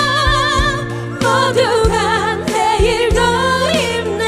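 Live trot song: several women singing together with strong vibrato into microphones over a backing track with bass and drums. The voices drop out briefly about a second in, then come back in.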